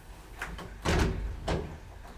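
Elevator door of a 1968 Asea-Graham traction elevator shutting. There is a light knock, then a heavy bang about a second in, then a second sharp knock half a second later.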